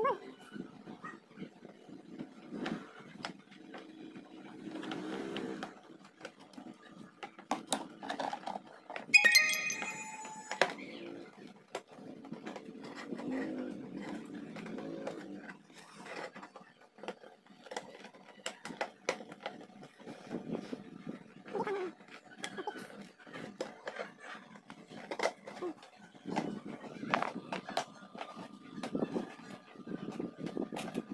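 Hard plastic clicks and knocks as a stacking plastic vegetable container and its snap-on lid are handled and set down. About nine seconds in there is a brief, loud, high-pitched whine.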